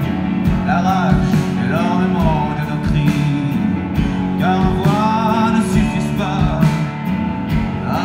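Live rock band playing loudly: drums and electric guitars, with a bending, sliding melodic line over them.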